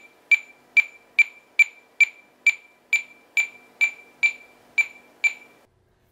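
Zebra TC57 mobile computer's barcode-scan beep: a short, high-pitched beep repeated about a dozen times at a steady pace of a little over two a second, each beep confirming a successful barcode read.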